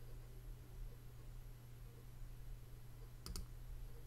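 A quick double click of a computer mouse about three seconds in, over a faint, steady low hum.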